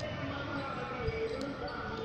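Mini tripod holding a compact camera being handled and lifted off a concrete ledge, with a couple of faint knocks of its plastic legs against the surface over faint background voices.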